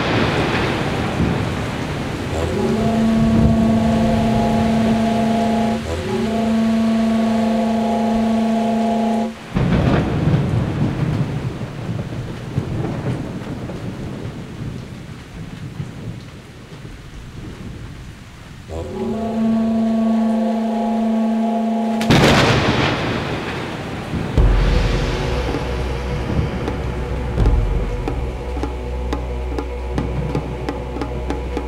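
Recorded thunderstorm, with rain and rolling thunder and a loud crack of thunder about 22 seconds in, opening a music track. Held chords rise out of the storm twice, and a deep bass line enters near the end.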